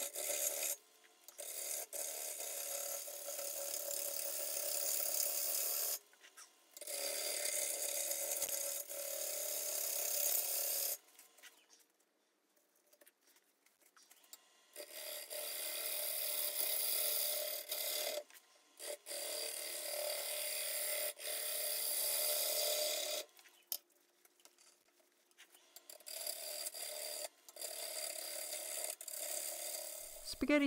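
Half-inch bowl gouge with a 40/40 grind cutting wet, green black walnut on a spinning lathe, a steady scraping hiss of shavings coming off. The cuts come in runs of a few seconds, with short breaks where the tool lifts off and it goes quiet.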